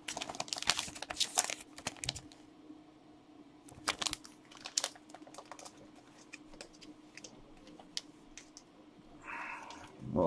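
Light clicks and crinkling of a trading card being handled in a clear plastic holder, densest in the first two seconds, then a few scattered clicks.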